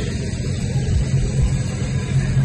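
Small tractor's engine running steadily at a distance, a low even engine note, while it works across the pitch distributing a sanitizing treatment over the synthetic turf.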